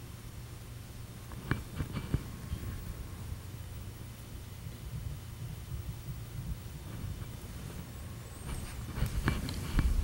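Steady low hum of studio room noise under faint handling sounds from oil painting with a small brush. Light clicks come about one and a half and two seconds in, and a few small knocks come near the end.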